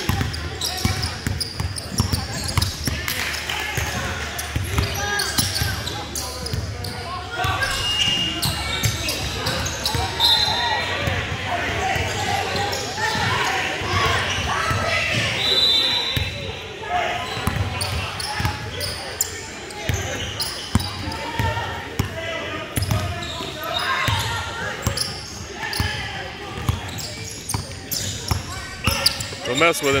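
Basketball bouncing on a hardwood gym floor during play, with a few short squeaks and players' and onlookers' voices echoing through the large hall.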